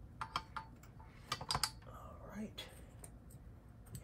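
Irregular sharp clicks and light rattles of plastic cable connectors and wiring being handled inside an open computer tower.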